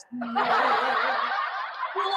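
A person laughing: a few short voiced pulses, then a long, breathy, hissing snicker.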